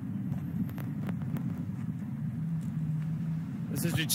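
Steady low rumble of road traffic, with a few faint clicks. A man's voice comes in near the end.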